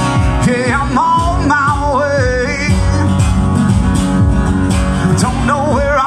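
Live country song: a male voice sings with vibrato over a strummed acoustic guitar and a steady beat.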